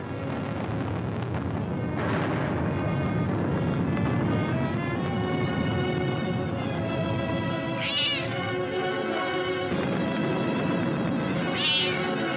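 Orchestral film score with a kitten crying out twice, about eight seconds in and again near the end; each cry rises and falls in pitch.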